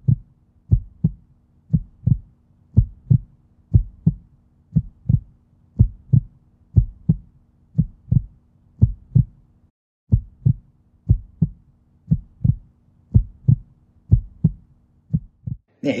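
A heartbeat sound effect: low double thumps repeating about once a second, over a faint steady hum that cuts out briefly about ten seconds in.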